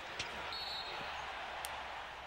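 Basketball game sound: steady arena crowd noise with a few faint knocks of a ball bouncing on the court.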